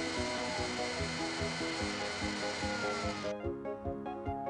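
Kitchen blender motor running with laundry and water in its jug, over background music; the motor cuts off suddenly about three seconds in.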